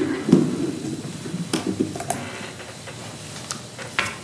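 Knocks, clicks and rustling picked up by a podium microphone as people settle at it and handle papers. The loudest knock comes about a third of a second in, with a few more clicks about a second and a half in.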